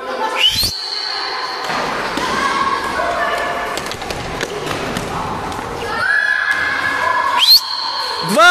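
Children shouting and cheering in an echoing gym during a frisbee game, with thuds on the wooden floor. A high whistle rises and holds for about a second just after the start, and sounds again near the end.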